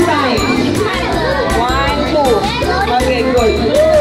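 Several children's high voices calling out and chattering over one another, with background party music playing underneath.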